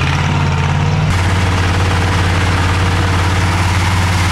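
Engine of a compact sidewalk-cleaning machine running steadily with a deep hum. About a second in, a broad hissing rush joins it as the front rotary brush sweeps fresh snow.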